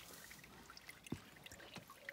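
Faint trickle and drip of rainwater running into a garden rainwater tank, with scattered drops landing on the water surface as it slowly refills in light rain. One light tap just past the middle.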